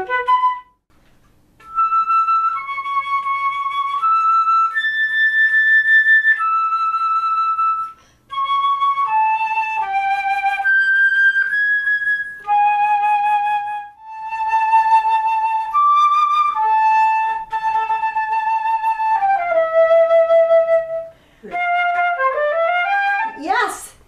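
Concert flute playing a slow solo melody of held notes with vibrato, in phrases broken by short breaths.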